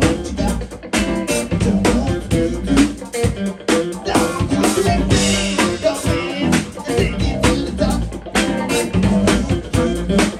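Live band music, with an electric bass guitar and a drum kit playing a steady beat.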